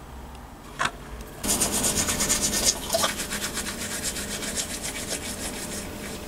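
A toothbrush scrubbing teeth in quick, rhythmic back-and-forth strokes, starting about a second and a half in after a short click.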